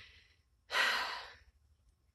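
A person sighing: one breathy exhale a little under a second in that fades away over about half a second, after a faint breath at the very start.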